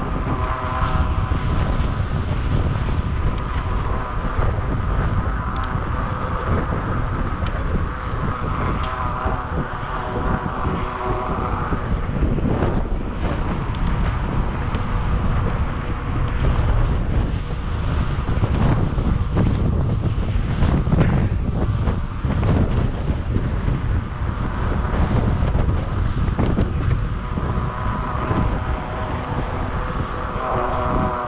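Wind buffeting the camera's microphone while cycling along a paved path, with tyre rolling noise and small knocks from bumps. A steady high whir is heard for about the first twelve seconds, fades, and returns near the end.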